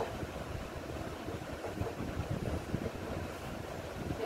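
Steady low rumbling background noise with irregular low flutter and no distinct clicks or tones.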